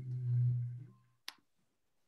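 A person's low, closed-mouth hum held steady for about a second, followed by a single sharp click.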